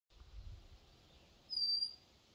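A bird calls once with a single clear, high whistled note, held for under half a second and falling slightly in pitch. A faint low rumble comes before it.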